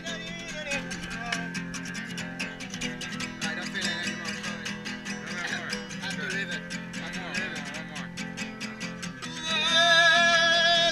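Acoustic guitar played live, strummed and plucked in a steady rhythm. About nine and a half seconds in, a man's singing voice comes in loudly over it.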